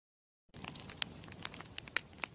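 Crackling burning-paper sound effect: scattered sharp crackles over a faint hiss, starting about half a second in.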